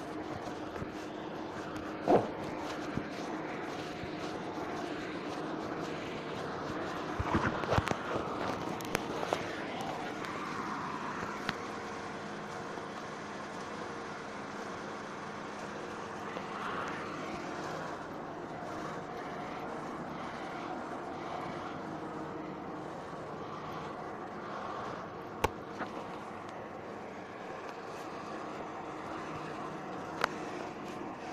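Steady background hum, with a few sharp clicks scattered through it.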